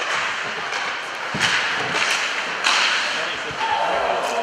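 Ice hockey play heard from the rink boards: two sharp hits, a little over a second apart, each followed by a brief hissing scrape, over the noise of the arena.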